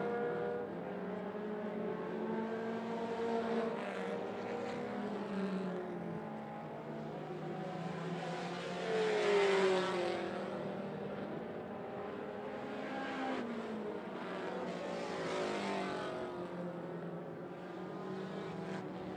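Several mini stock race cars running laps on a dirt oval, their engine notes rising and falling as they go around the turns. One car is louder about nine seconds in, its pitch falling as it passes the grandstand.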